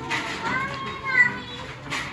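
Background voices of other shoppers in a store, with a high-pitched voice, like a child's, heard between about half a second and a second and a half in.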